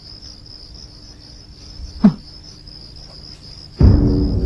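Crickets chirring steadily in a continuous high trill. About two seconds in there is a brief short voice sound, and just before the end a loud low drum hit comes in as the opening of orchestral music.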